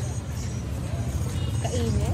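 Busy market background: a steady low rumble with faint music and voices mixed in, and a short spoken "eh" near the end.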